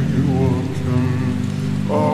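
Slowed-down, reverb-drenched nasheed vocals: several layered voices holding long, wavering notes, over a steady background of rain.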